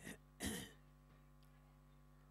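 A person clearing their throat: a short rasp at the start and a louder one about half a second in, over a faint steady electrical hum.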